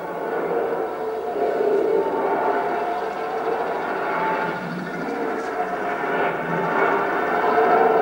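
A steady rushing, droning noise with faint held tones running through it, a stage sound effect for the spinning Sudarshana chakra. It swells a little near the end.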